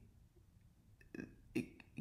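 A pause in a man's speech: faint room tone, a short low sound from his throat or mouth about a second in, then he starts speaking again near the end.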